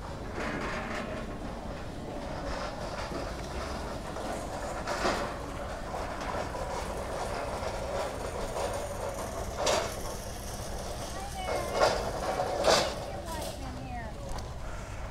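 Outdoor background noise: indistinct voices and a steady low rumble, with a few short knocks standing out about five seconds in and near the end.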